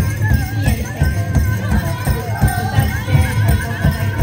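Powwow music: a steady bass drumbeat under a high, wavering voice, with bells jingling on the dancers' regalia.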